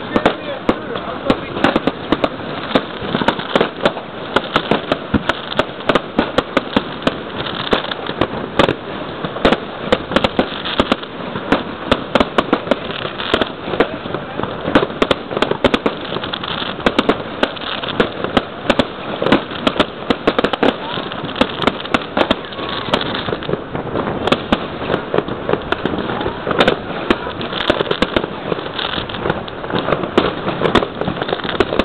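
Many fireworks going off at once: a dense, irregular stream of sharp bangs, pops and crackles, several a second, that keeps up without a break as aerial shells burst.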